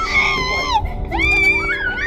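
A girl wailing and crying out in high, arching, breaking cries over background music with a held low note.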